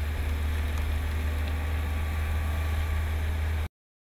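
Fiat Grand Siena sedan driving: a steady low drone of engine and road noise that cuts off abruptly near the end.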